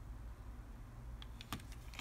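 A few faint, short plastic clicks and taps from handling a hair straightener, clearest about one and a half seconds in, over a low steady hum.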